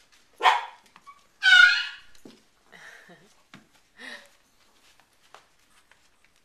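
Small Yorkshire terrier barking in play: two sharp barks in the first two seconds, the second the loudest, then a couple of softer short yips.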